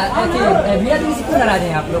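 Speech only: men talking in Hindi, their voices running together.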